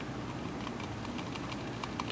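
A run of faint, irregular ticks from the scroll ball of an Apple Mighty Mouse as it is rubbed and rolled with a cotton swab to clean it.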